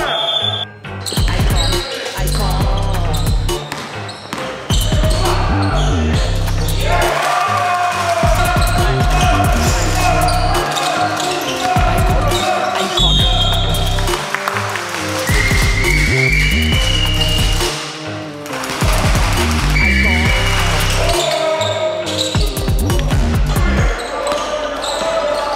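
Background music with a heavy bass beat over a basketball bouncing on a gym floor as a player dribbles.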